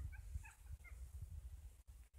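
Wind buffeting the microphone as an uneven low rumble, with a few faint, short high calls from an animal in the first second.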